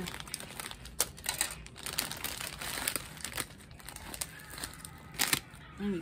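Plastic candy packaging crinkling and crackling irregularly as items are pushed and shifted in a packed basket, with one sharper crackle about five seconds in.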